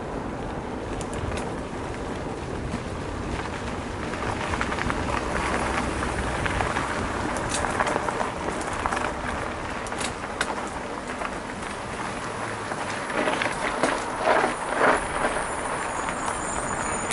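Mountain bike ridden fast over a dirt singletrack, heard from a bike-mounted camera: a steady rumble of tyres on dirt and air over the microphone, with the bike clicking and rattling over bumps and a few louder knocks near the end.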